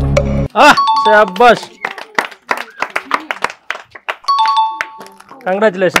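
Background music cuts off about half a second in. After it come excited voices, sharp short clicks, and a two-note electronic chime that sounds twice.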